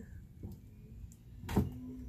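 Faint handling noise from a plastic-wrapped card of stickers being moved about, then a single sharp knock about one and a half seconds in, followed by a brief low hum.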